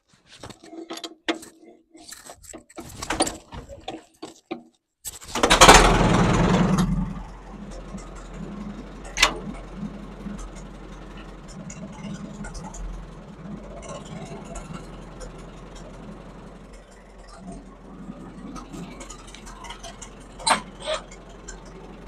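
Case D tractor's four-cylinder engine: a few seconds of clicks and knocks, then the engine catches about five seconds in with a loud burst of revs and settles into a steady idle.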